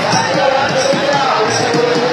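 Drums beaten in irregular repeated thumps, with a crowd's voices over them.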